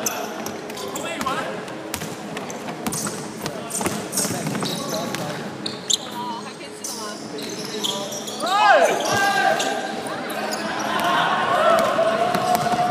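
Basketball game play in a large gym: the ball bouncing on the wooden court, with players calling out across the hall. A few short cries come about eight and a half seconds in.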